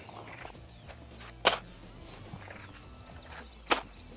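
Two sharp knocks about two seconds apart as boxes of pistol ammunition are set down on a wooden table, with faint handling noises between.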